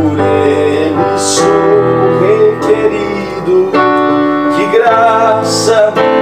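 Electronic keyboard with a piano sound playing slow, sustained chords and melody, with a voice singing along.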